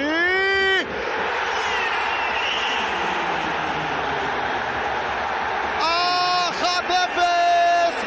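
Football stadium crowd cheering a goal, a loud steady roar of about five seconds. It opens with a commentator's short, drawn-out shout, and his commentary resumes over the crowd near the end.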